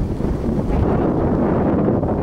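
Wind buffeting the microphone: a steady, fairly loud low rumble.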